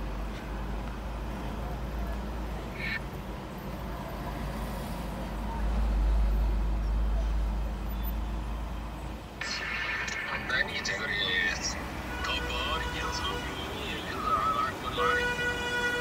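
City traffic heard from inside a car. A low engine and road rumble fills the first half. About nine seconds in, busier street noise starts, with steady pitched tones such as car horns, and a longer steady horn-like tone comes near the end.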